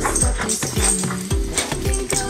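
Background music with a steady beat, over a goldendoodle barking.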